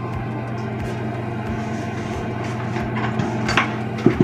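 A steady low electrical hum, with a few light clicks near the end.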